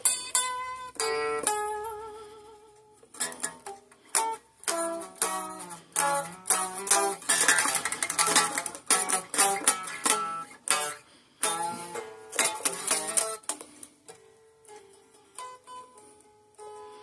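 Stratocaster-style electric guitar played unplugged, its thin plucked tone ringing on its own: blues lead lines of single notes, with vibrato on held notes about a second in, a busy run in the middle, and softer held notes near the end.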